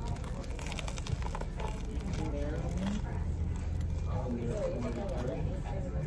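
Biting into and chewing a toasted baguette sandwich, with short crunches from the crust early on, over a steady low room hum and faint voices.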